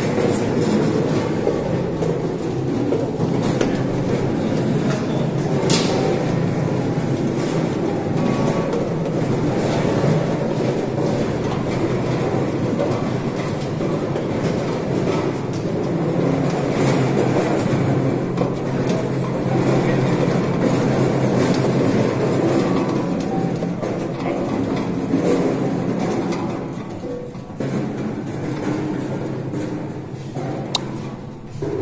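Hand-cranked lemon grading machine running: lemons roll and knock about inside its rotating wire-cage drum as it sorts them by size, a continuous clattering rattle that eases off somewhat near the end.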